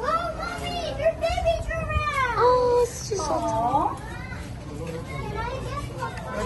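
Young children's high-pitched voices calling out, sliding up and down in pitch, loudest a couple of seconds in.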